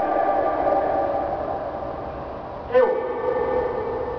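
A man singing long held notes into a microphone over a hall PA: one note held until just under three seconds in, then a short slide down into a lower held note.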